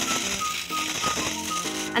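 Sand and gravel shaken in a round metal hand sieve: a steady rattling hiss as the sand sifts through the mesh, with the stones left on top. Background music plays over it.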